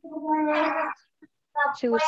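A person's voice holding a drawn-out vowel steady in pitch for about a second, then ordinary speech resumes near the end.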